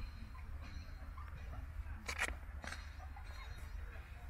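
Golf clubs handled in a golf bag: a few faint clicks and knocks, the clearest a pair about two seconds in, over a low steady rumble.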